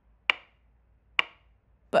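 Ticking clock: two sharp, woody ticks about a second apart, with a short ring after each.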